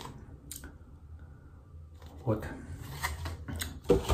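A few light clicks from plastic yogurt cups being handled, with a short click about half a second in and another near the end.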